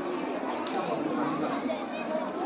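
Crowd chatter: many voices talking at once, indistinct and overlapping, with no single clear speaker.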